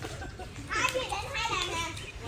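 Young children's high voices chattering and calling out at play, starting a little under a second in.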